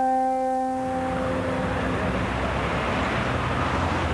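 Advert soundtrack: a held brass chord fades out over the first second or two as a steady rushing noise swells up and holds.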